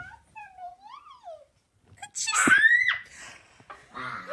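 A child's loud scream about two seconds in, its pitch sweeping up and then dropping away within about a second. Before it, a child's voice glides softly up and down.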